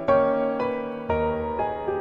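Background solo piano music, a soft cover-style piece with new chords or notes struck about every half second.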